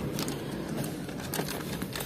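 Faint rustling and crinkling of a plastic wet-wipes packet as it is handled and a wipe is pulled out.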